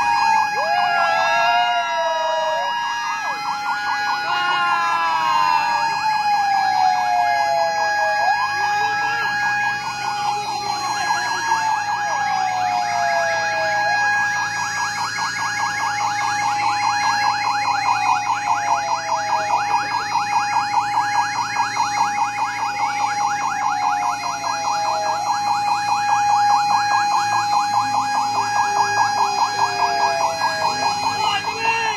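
Several emergency-vehicle sirens sounding at once: wails that fall in pitch, repeating every two to three seconds, over a steady held tone. From about halfway through, a rapid warbling yelp joins them.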